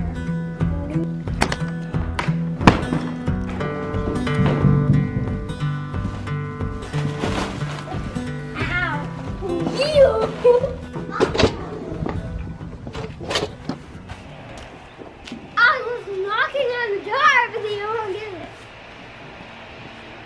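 Background acoustic guitar music with scattered knocks and thuds, joined in the second half by children's high-pitched voices and squeals.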